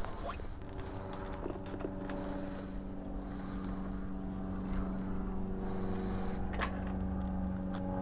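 Gloved hands handling a motorcycle's handlebar and controls: small clicks, scrapes and jacket rustle over a steady low hum.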